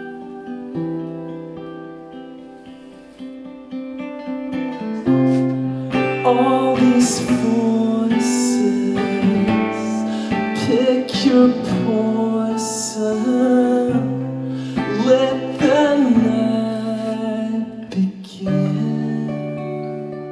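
Acoustic guitar playing with a man singing over it. The guitar plays alone and fades quieter for the first few seconds, then the playing grows louder and the voice comes in at about six seconds.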